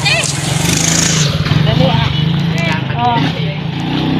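A vehicle engine running steadily at a low, even pitch, with short bits of voices over it.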